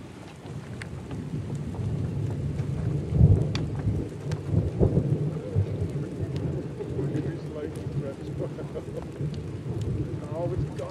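Thunder rumbling through steady rain, with louder rolls about three and five seconds in. Scattered sharp raindrop ticks sit on top.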